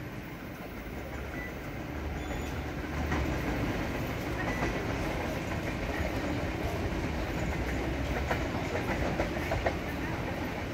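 Train running on the rails: a steady low rumble that grows louder from about three seconds in, with clicks and clacks of the wheels over the rail joints.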